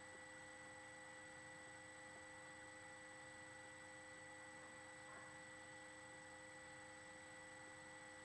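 Near silence: a faint steady hum of several even tones over a low hiss.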